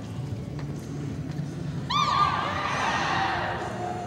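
Arena audience cheering, with a loud, shrill whistle about halfway in, rising suddenly and easing off toward the end: spectators reacting as a reining run finishes.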